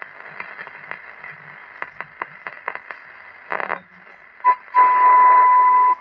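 Murphy Magic transistor radio being tuned across the band: hiss and crackle with scattered clicks as the dial moves, then a short beep and, near the end, a loud steady high-pitched tone lasting about a second.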